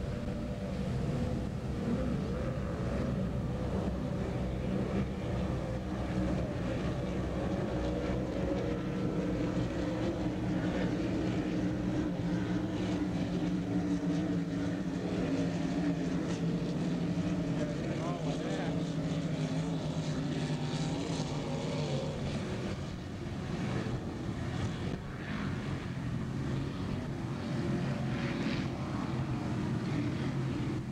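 Offshore racing powerboats running flat out, with a helicopter flying low alongside: a steady, loud engine drone whose pitch slowly sinks through the middle as they pass.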